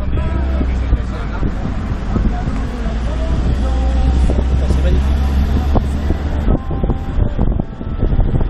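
Wind rumbling on an action camera's microphone while it moves along a road, over a running vehicle engine. The rumble eases off near the end.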